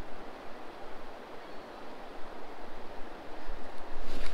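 Steady outdoor noise of wind and lake water, an even rushing hiss that rises and falls a little with no distinct event.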